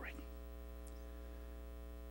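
Steady electrical mains hum with a stack of overtones, a constant low buzz on the sound system.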